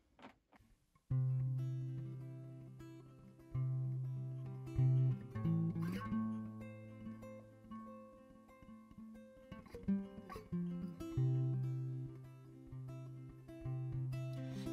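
Solo acoustic guitar playing a song's intro, starting about a second in: picked notes over a ringing low bass note, with a few sharper strummed accents.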